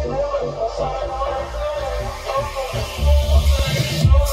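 Electronic instrumental music playing through Q Acoustics 3050i hi-fi speakers driven by a Crown XLS 2002 class D power amplifier, with a steady bass beat under a melodic line.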